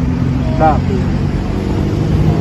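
Steady low hum of a vehicle engine running, under a single short spoken word.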